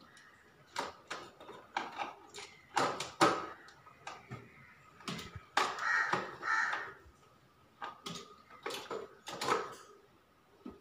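Irregular sharp clicks and knocks as wires and plastic circuit breakers are handled in an electrical distribution board, with a few longer harsh sounds near the middle.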